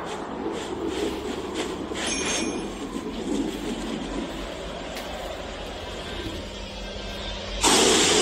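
Film soundtrack ambience: a steady rumbling noise with a few faint clicks, broken near the end by a sudden loud hit.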